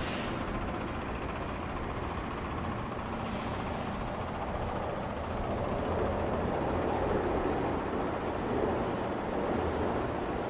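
Steady traffic noise from a busy multi-lane city road, with a vehicle passing a little louder in the second half.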